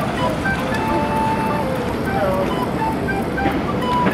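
Pool water splashing and sloshing as children play in it, with high children's voices calling out briefly over the steady wash of water.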